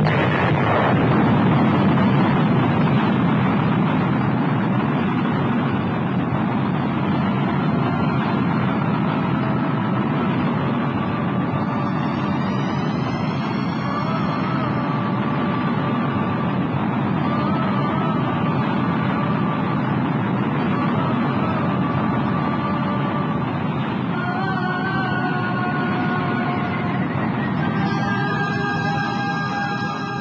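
Steady, loud roar of a rocket engine burn, starting abruptly: the spacecraft's main engine firing to head for home. Faint wavering musical tones come in over it partway through and grow stronger near the end.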